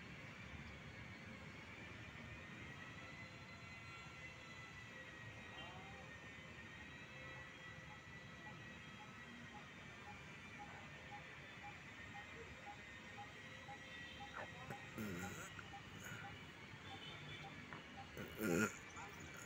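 Faint outdoor background noise with a few thin steady tones, and partway through a short run of faint, evenly spaced beeps, about two a second.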